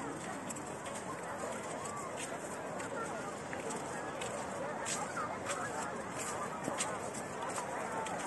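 Babble of a large beach crowd: many voices talking and calling out at once, none of them clear, at a steady level.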